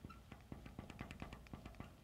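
Faint quick taps and clicks of a marker writing on a board, several a second.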